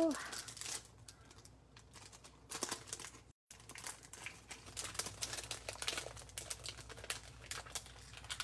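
Light handling noise at a craft table: a plastic packet crinkling and small clicks and taps as a card is set down and a sheet of adhesive gems is picked up. The sound cuts out completely for a moment about a third of the way in.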